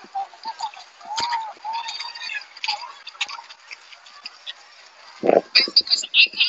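Faint, broken voice fragments and scattered clicks over a video-call connection, with a short louder burst of voice about five seconds in.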